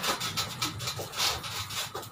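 A person scrambling off a bunk bed and down under it: repeated rubbing and scraping against the bedding, bed frame and floor, about four strokes a second.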